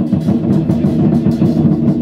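Chinese war drum troupe playing: large barrel drums beaten rapidly and continuously, with hand cymbals clashing over them at a steady pulse.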